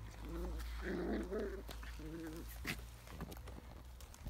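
Puppies playing and giving three short, high-pitched whining yips within the first couple of seconds, then quieter.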